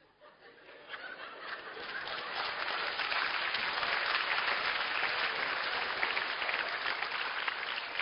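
A congregation applauding, the clapping swelling over the first couple of seconds and then holding steady.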